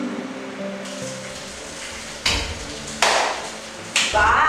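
Background music with long held notes, then two loud, slow hand claps about two and three seconds in.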